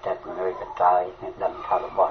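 Speech only: a radio news reader talking continuously in Khmer, with the narrow, top-cut sound of a radio broadcast.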